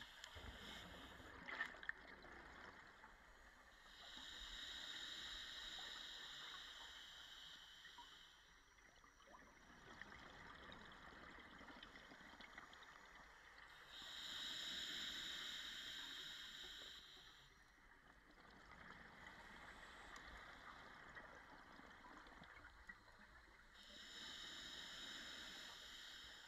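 Scuba regulator exhaust bubbles heard underwater: a burst of bubbling hiss with each exhalation, roughly every ten seconds, three times. A couple of sharp clicks come about a second and a half in.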